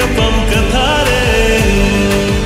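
A Santali song in a lofi remix: a voice singing a gliding melodic line over sustained backing tones and a steady beat of about two hits a second.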